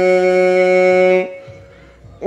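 A young man's voice holding one long, steady note at the end of a phrase of melodic Qur'an recitation, amplified through a handheld microphone. The note breaks off a little over a second in, leaving a short pause for breath.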